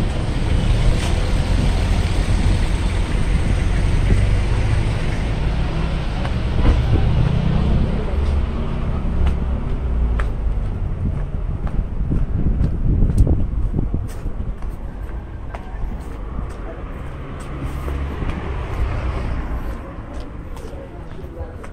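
Street traffic: motor vehicles running past with a low rumble that eases off about two-thirds of the way through.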